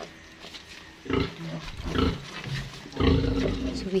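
Pigs, a sow with her nursing piglets, grunting: short calls about a second in and two seconds in, then a longer, louder one near the end.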